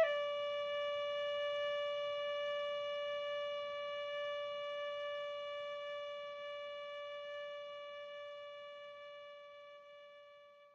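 Tin whistle holding one long, steady note, the closing note of a slow air, fading away gradually.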